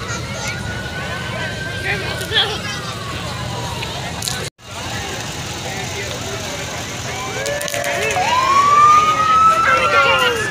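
An emergency-vehicle siren wailing in a parade over crowd chatter: its pitch slowly falls during the first few seconds, and after a brief break it rises again near the end.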